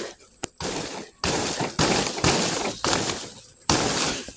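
Banana plant's leaves and dry leaf sheaths rustling and crackling in short bursts, about two a second, as the trunk is pushed and shaken by hand, with one sharp snap near the start.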